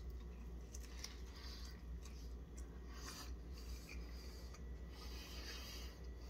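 Close-up chewing of a mouthful of fish taco with shredded napa cabbage: faint, irregular crunching, over a low steady hum.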